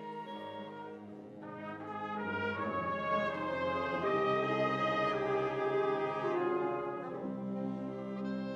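High school concert band playing, brass to the fore with sustained chords. The music swells from about a second and a half in to a louder held passage, then eases back near the end.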